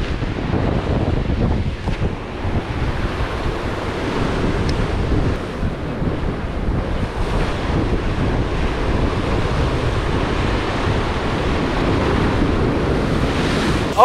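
Rough sea surf breaking and washing over shoreline rocks, with wind buffeting the microphone: a steady rush of noise without pause.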